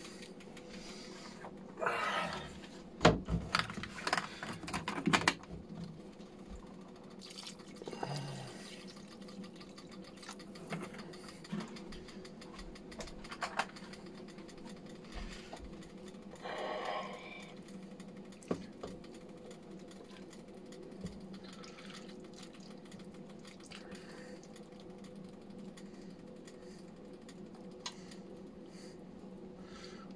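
Water being added to a steel pot of soup, with clatters and knocks of the pot and spoon in the first few seconds and short noisy bursts later, over a steady low hum.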